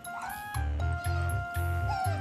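Background music with a steady bass beat. Over it come short, high, squeaky calls, one near the start and a brief one near the end: the chirping of an Asian small-clawed otter.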